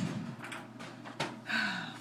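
Quiet handling noises: a few soft knocks and a sharp click about a second in, with a short murmur of voice near the end.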